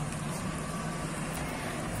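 Steady street ambience: distant road traffic as an even, unbroken hum.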